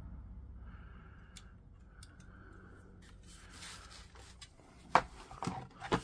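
Low background noise, then a sharp click about five seconds in and a few smaller clicks and taps near the end: handling of multimeter test probes and the meter's rotary dial.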